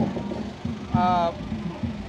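A man's voice pausing mid-sentence, with one drawn-out hesitation sound about a second in, over a steady low hum of street background.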